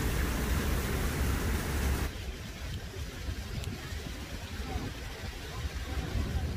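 Steady outdoor hiss over a low rumble, which cuts off suddenly about two seconds in, leaving a quieter low rumble.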